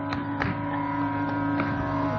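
Carnatic concert music in a quiet passage: one long steady note held over the drone, with a few light percussion strokes.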